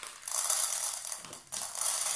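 Dry rice pouring from a plastic bag into an empty metal tin, the grains pattering and rattling on the tin's bottom, in two pours with a short break about one and a half seconds in.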